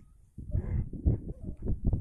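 A mother dog and her seven-week-old puppies growling in rough play, as a run of short, irregular low growls that start after a brief quiet moment.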